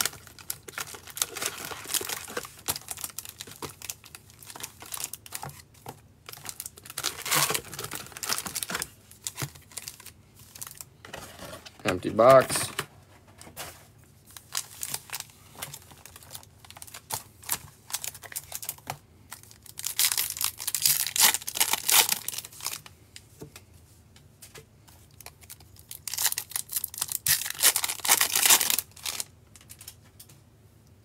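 Topps baseball card pack wrappers being torn open and crinkled, with cards shuffled between the hands, coming in several rustling bursts over softer handling noise. A short wavering voice sound, like a hum, comes about halfway through.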